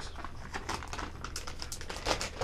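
Clear plastic bag of soft plastic fishing worms being handled: light rustling and small clicks of the plastic, over a low steady hum.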